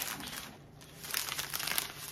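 Plastic pouches of dry dressing mix crinkling as they are handled, with a short lull about half a second in before the crinkling picks up again.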